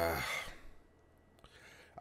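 A man sighs, a breathy voiced sigh that falls in pitch and fades out about half a second in, followed by near silence.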